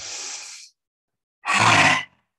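A woman's quick hissing inhale, then about a second later a loud, rasping exhale forced from the throat with the tongue stuck out: the yoga lion's breath (simhasana).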